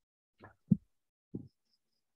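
Three short, low pops, the second one loudest.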